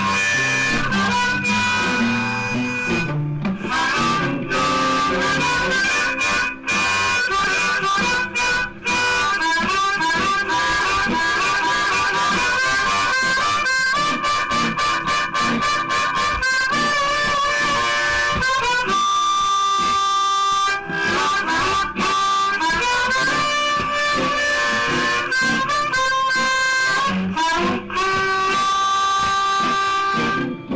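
Hohner Marine Band diatonic harmonica in C played in second position, improvising bent, wailing G blues lines over a blues guitar backing track. It is played into a homemade microphone built from an old telephone handset.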